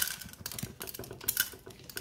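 Hulled sunflower seeds being poured into a bird feeder and spilling out, a rattle of many small irregular clicks that is densest at the start and thins to scattered ticks.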